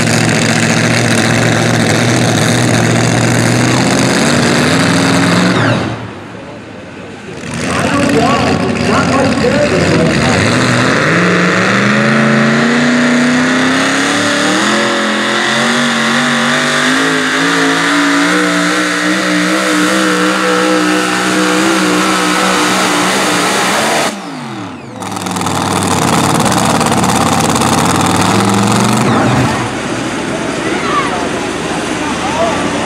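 Supercharged engine of a pulling truck running at high revs under full load as it drags a weight sled, its pitch wavering and slowly climbing. The engine sound drops away sharply twice, about six seconds in and again about twenty-four seconds in, and each time comes back with the revs rising.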